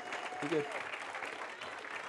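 Congregation applauding: many hands clapping steadily, with a brief voice about half a second in.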